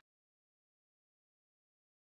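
Complete digital silence: the sound track is blank, with no sound at all.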